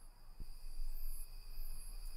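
Faint, steady chirring of crickets, a night-time insect ambience, with a soft click a little under half a second in.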